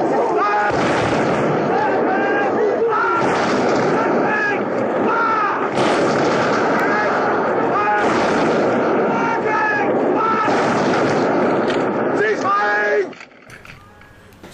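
Film battle soundtrack of infantry volley fire by ranks: repeated rifle volleys over continuous shouting of many men, a little bit noisy. It cuts off suddenly near the end.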